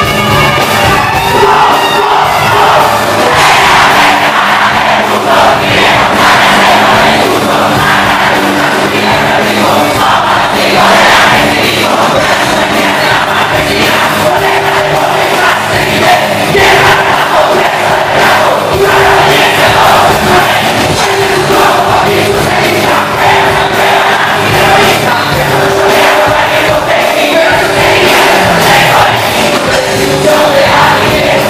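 Rock band playing live and loud on drums, electric bass, guitar and keyboards, with the crowd shouting along.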